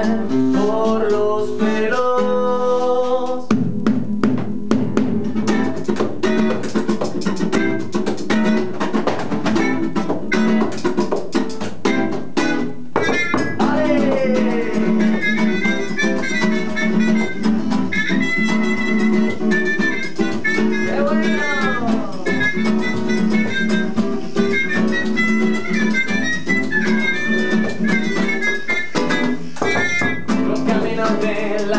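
Acoustic band playing an instrumental passage: a nylon-string classical guitar strummed briskly in a steady rhythm, with a trumpet playing melody lines over it.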